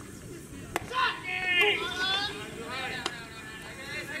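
A pitched baseball smacks into the catcher's mitt with a sharp pop just under a second in, followed by drawn-out shouts from men on the field and another sharp click about three seconds in.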